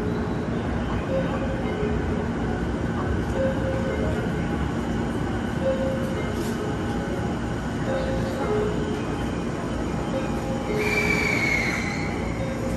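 A commuter train standing at an underground platform with its doors open, giving a steady low rumble and hum. Over it, a two-note falling chime repeats about every two seconds. Near the end a high whine comes in and slides slightly down in pitch.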